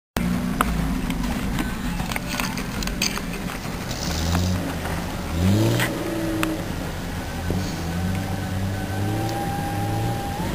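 Off-road vehicle's engine heard from inside the cabin, running steadily in a low gear on a sand dune descent, with a brief rise in revs about five and a half seconds in. Scattered knocks and rattles come from the vehicle body.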